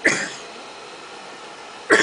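Two short, loud vocal bursts from a person, one at the start and one near the end, over a steady room background.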